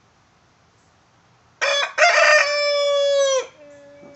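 Rooster crowing once, a cock-a-doodle-doo starting about one and a half seconds in. It has a short opening note, then a long held note that drops in pitch as it ends, about two seconds in all.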